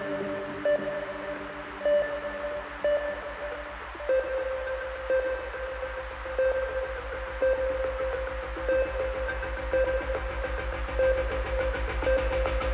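Live electronic music played on synthesizers. About four seconds in, the music changes from held chords to a fast pulsing low bass under a note repeated about once a second, as one track gives way to the next.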